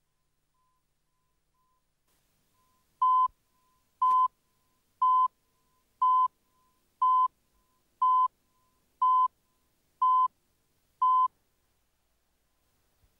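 Countdown-leader beeps: nine short, identical beeps at one steady pitch, one a second, starting about three seconds in, each marking a number of the video countdown.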